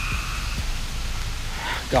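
A chorus of frogs calling, loud and steady, an even high-pitched drone that runs on without a break.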